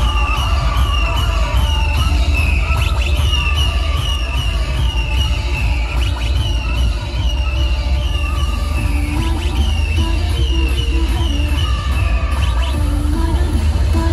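Loud electronic dance music through a large outdoor DJ sound system. The bass is heavy and steady, a short high figure repeats about twice a second, and a lower melody line comes in about nine seconds in.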